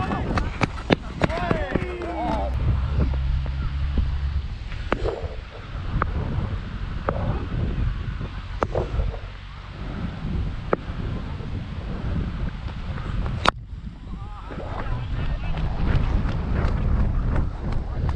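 Wind buffeting a helmet-mounted action camera's microphone, a low rumble throughout, with faint voices of players calling now and then. A sharp click cuts through once, about 13 seconds in.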